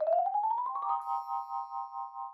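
Edited-in cartoon sound effect: a fluttering tone that rises steadily for about a second, then holds as a bright, wavering chime chord that slowly fades.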